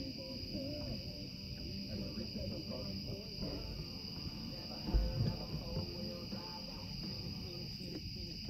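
Steady high-pitched chorus of night insects, with low murmuring voices or music beneath it and a single low thump about five seconds in.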